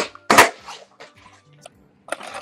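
A skateboard snaps off the ground right at the start, then lands hard on a concrete floor about half a second later, the loudest sound here, followed by a few light clacks from the board.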